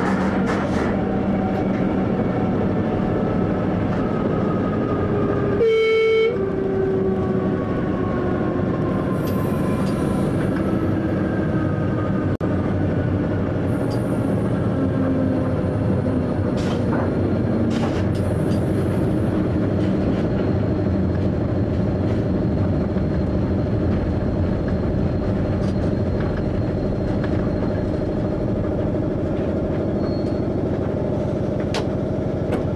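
Train running, heard from inside the driver's cab: steady rumble with a whine that falls slowly in pitch, and one short horn blast about six seconds in.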